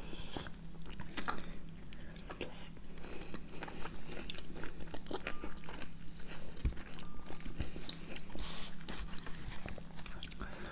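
Close-miked eating: biting into a sweet, juicy persimmon and chewing watermelon. Irregular small clicks of bites and chewing.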